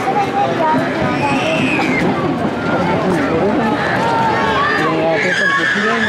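Several people talking at once, their voices overlapping into a busy chatter, with a higher voice calling out briefly a little over a second in.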